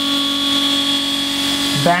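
Electric raw-water cooling pump with a rubber vane impeller, running with a loud, steady whine as it pushes seawater through the heat exchanger for the stabilizer hydraulic oil.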